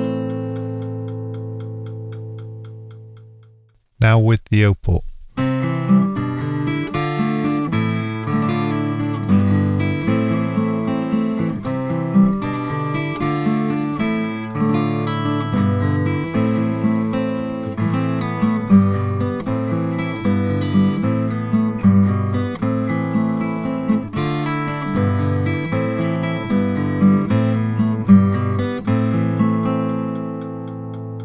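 Steel-string acoustic-electric guitar recorded through a microphone. A chord rings and dies away over the first few seconds. A few sharp clicks follow, and then a fingerpicked arpeggiated tune plays, with a Planet Waves O-Port cone fitted in the soundhole.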